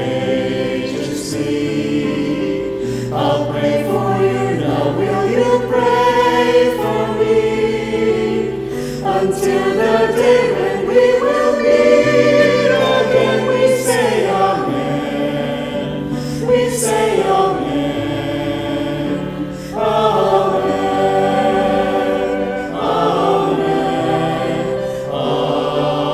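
Virtual choir of men and women singing a Christian song together in harmony, their separately recorded voices mixed into one sound.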